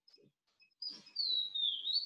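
A bird singing: a few brief high chirps, then from about a second in a longer high whistled note that glides down and slightly back up.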